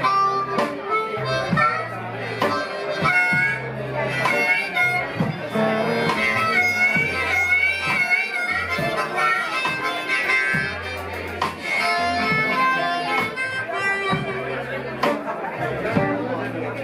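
Blues harmonica played into a vocal microphone, a solo of bending, wavering notes over a live band of electric bass, drums and electric guitar.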